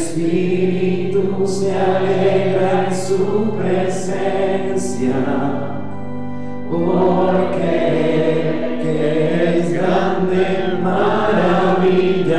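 Voices singing a slow hymn over held accompanying chords. The singing eases off for about a second near the middle, then picks up again.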